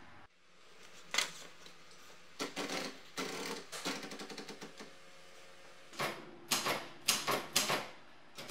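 Portable manual typewriter being loaded and used: a run of quick clicks as a sheet of paper is wound in around the platen, then several sharp, separate key clacks near the end.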